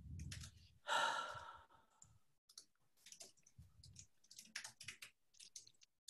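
A long exhaled sigh about a second in, then faint, irregular clicking of computer keyboard typing, heard over a video-call microphone.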